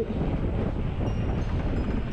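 Steady wind noise on the camera microphone with a low rolling rumble, from riding along a street.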